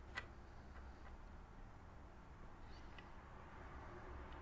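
Near silence: room tone with a low steady hum, a faint click just after the start and a couple of fainter ticks around three seconds in.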